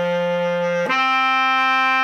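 Bass clarinet playing a large leap between its open G and the clarion D above it: the G is held until about a second in, then the player jumps up to a sustained D. The G is played holding the D's tongue position (voicing), which makes it sound thin.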